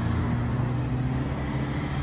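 A car passing slowly at low speed, its engine a steady low hum over road noise.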